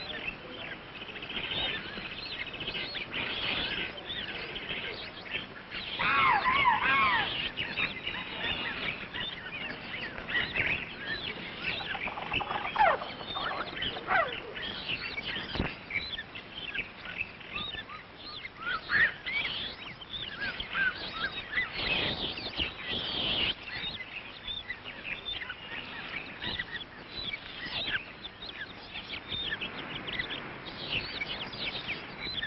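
Many birds calling at once in overlapping chirps and squawks, with a louder run of arching calls about six seconds in and a few long falling calls a little later.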